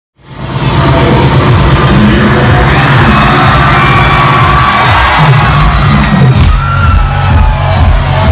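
Loud electronic dance music with a heavy bass beat from a club's large PA system, recorded close to clipping on a phone's microphone. It cuts in from silence about a quarter second in.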